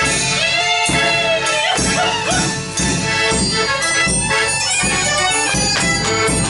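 Polish village band playing a fast oberek opoczyński: fiddle melody over accordion, with a double-headed drum fitted with a cymbal beating along.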